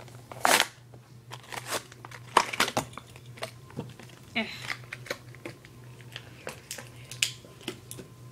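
Cardboard-and-plastic blister packaging of a diecast toy car set crinkling and crackling as it is torn open by hand: a run of irregular sharp crackles and snaps.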